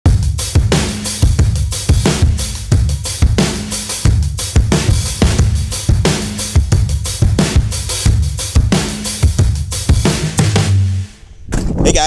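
Intro music with a driving drum-kit beat and bass, which stops about 11 s in.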